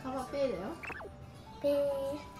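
Light background music with long held notes, over a child's high, sliding vocal sound about half a second in that rises sharply at its end. A louder held note comes in near the end.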